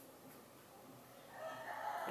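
Faint room noise, then a rooster crowing from about a second and a half in, growing louder toward the end.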